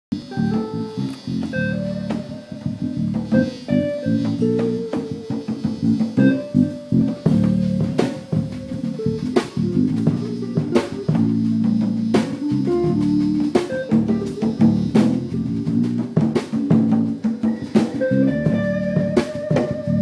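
Live band playing an instrumental kompa groove: electric guitar notes over bass guitar, with a drum kit keeping a steady beat of kick, snare and cymbal strokes, plus hand percussion.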